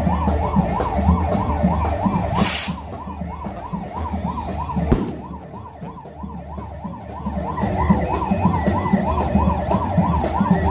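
Vehicle siren sounding a fast warble, about three to four rises and falls a second, without a break, over a deep low rumble. A short burst of hiss comes about two and a half seconds in, and a sharp click about five seconds in.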